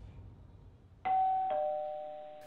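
Two-note ding-dong doorbell chime about a second in: a higher note, then a lower one half a second later, both ringing on and slowly fading.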